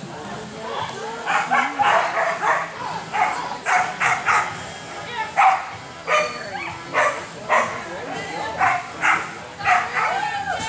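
A dog barking over and over in short barks, one or two a second, starting about a second in.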